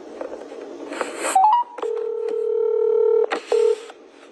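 Telephone call tones. A quick rising run of short beeps is followed by a long, low, buzzy tone and one short repeat of it, the sound of a call being placed and ringing through on the line.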